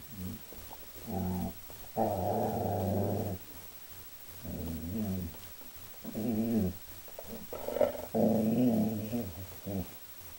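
Dog growling: five low growls in a row, the longest a little over a second.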